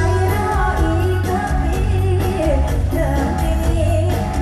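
Live mor lam music played loud through a PA: a woman singing into a microphone over an amplified band with heavy bass and a steady drum beat.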